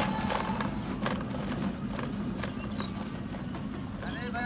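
Footsteps on a dirt road: a soft knock about every half second, over a steady low hum.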